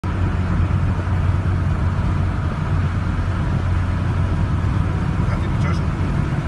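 Interior road noise of a moving car: a steady low rumble of engine and tyres heard inside the cabin.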